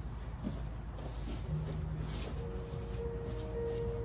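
Bodies scuffling and shifting on vinyl gym mats as two people grapple, with faint background music holding long steady notes from about halfway in.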